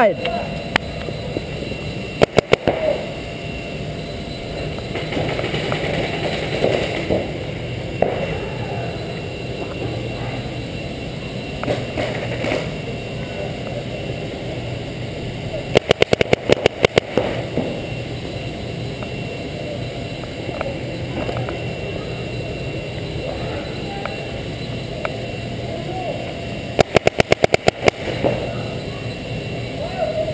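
Paintball marker firing rapid strings of shots: three bursts of roughly ten shots each, about two seconds, sixteen seconds and twenty-seven seconds in, over the steady background noise of an indoor paintball arena.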